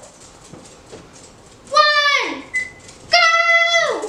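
Three high-pitched, drawn-out vocal calls, each held on one note and then dropping sharply in pitch as it ends.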